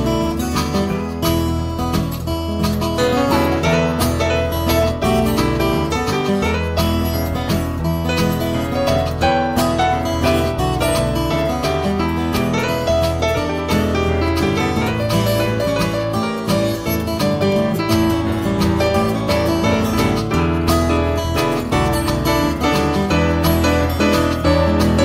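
Acoustic blues instrumental passage led by plucked acoustic guitar, playing steadily with no singing.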